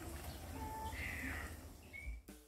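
A bird giving short calls about once a second, over a steady low rumble of wind on the microphone.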